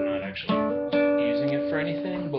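Acoustic guitar playing a short phrase of picked notes and double stops, with two strings sounded together. New notes are struck about half a second in and again near one second, each left ringing.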